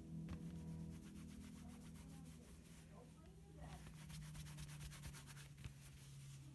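Faint rubbing of the Apple Polishing Cloth wiped quickly back and forth over an iPhone, in rapid strokes that are busiest in the second half. A low steady hum runs beneath.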